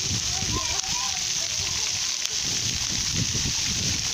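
Steady hiss and spatter of water jetting up from a homemade pipe fountain and falling back onto wet pavement.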